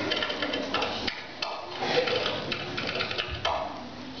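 Scattered light clicks and knocks with faint, indistinct children's voices in a hall.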